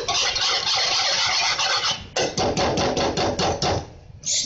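Wire whisk beating thick chocolate fudge mixture in a metal pan, the wires scraping and clattering against the pan. It is a continuous scraping for about two seconds, then quick strokes at about six a second, stopping just before the end.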